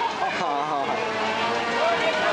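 Parade spectators talking and calling out over one another as a vintage convertible rolls slowly past, its engine running, with a sharp click or clap about half a second in.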